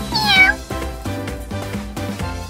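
A cat meows once, a short call of about half a second that falls in pitch, near the start, over background music.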